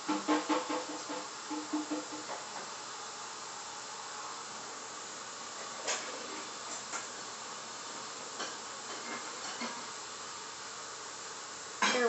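Steady background hiss of room noise, with faint pitched traces in the first two seconds and a few soft clicks later on.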